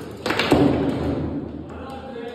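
Foosball table in play: two sharp knocks about a quarter-second apart as the ball is struck by the figures and rods, then a rattling clatter that fades.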